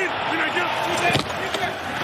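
A man laughs briefly over football game audio, with a sharp knock about a second in as the offensive and defensive linemen collide at the snap.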